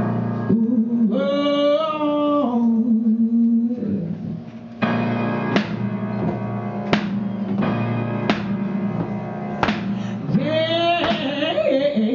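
Live song for voice and piano. A woman sings long, wavering phrases over the piano for the first few seconds. The piano then plays alone, striking chords about once a second, and the singing comes back about ten seconds in.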